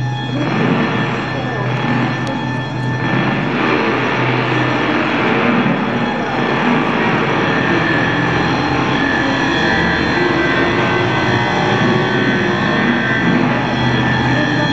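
Live electroacoustic music: a dense, noisy wash of processed electric guitar and laptop electronics over a steady low hum.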